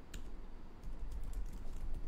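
Typing on a computer keyboard: a run of quick, light keystroke clicks.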